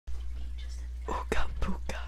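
A person whispering a few breathy syllables about a second in, over a steady low hum.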